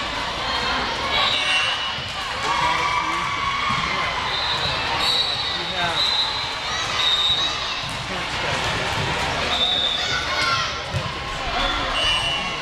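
Indoor volleyball gym ambience: overlapping chatter of players and spectators echoing in a large hall, with volleyball hits and several short high squeaks scattered through.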